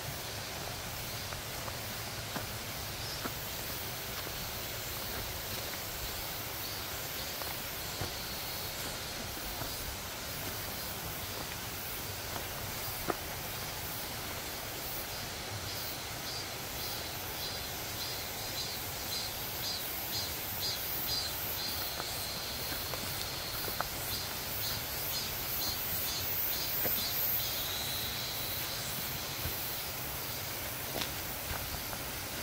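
Steady outdoor forest ambience with occasional soft footsteps on a dirt trail. From about halfway, a rhythmic high-pitched chirping call, about three a second, comes in and grows louder near the end.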